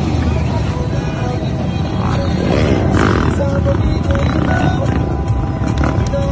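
Motorcycle engines revving in a dense convoy, mixed with people shouting and music playing.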